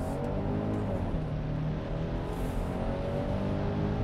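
The 2023 Kia Sportage X-Pro's 2.5-litre four-cylinder engine pulling hard under acceleration, heard from inside the cabin, its drone rising steadily in pitch.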